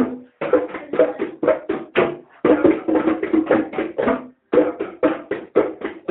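Bongos struck by hand, a quick run of sharp strikes with a short ring, about four to five a second. The strikes come in phrases of about two seconds, with brief pauses between them.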